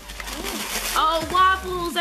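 A brief rustle of plastic food packaging being handled, then a voice from about a second in.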